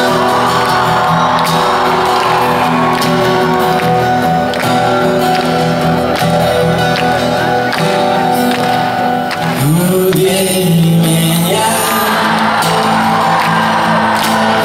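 Live song on a strummed acoustic guitar, playing the opening of a song; about ten seconds in, singing comes in.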